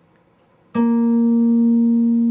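Guitar: a single note on the eighth fret of the D string (B-flat) picked about three-quarters of a second in and left ringing, slowly fading.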